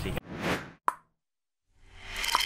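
Animated-logo sound effect: a short swelling whoosh, then a single sharp pop just under a second in.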